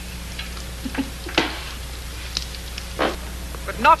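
Steady low hum and hiss from an old video-tape soundtrack, with a few brief faint sounds about a second in and again at three seconds.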